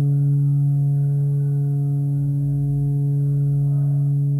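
EMS Synthi AKS analogue synthesizer holding one steady low drone, rich in overtones.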